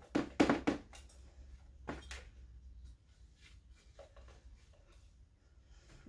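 Plastic self-watering pot parts being handled: a few light knocks and scrapes in the first two seconds, then faint rustling.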